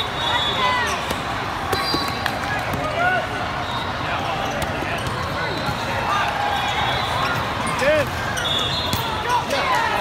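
Indoor volleyball hall ambience: many short squeaks of sneakers on the sport-court floor and the smack and bounce of volleyballs, over a steady babble of players and spectators across several courts.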